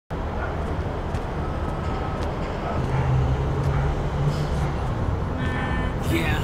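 Low, steady rumble of street traffic, swelling as a vehicle passes in the middle; a voice starts near the end.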